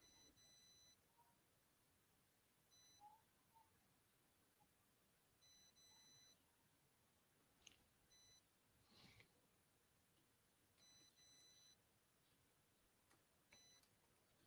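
Near silence: faint room tone with a few very faint, short, high-pitched beeps in small clusters.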